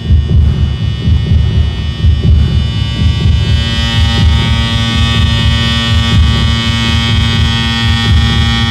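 Electronic drone from a performance sound design: a loud, pulsing low rumble under a buzzing hum of many steady tones. The hum swells about four seconds in.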